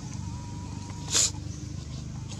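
A single short, sharp call from a macaque, loud and high-pitched, about a second in, over a steady low hum.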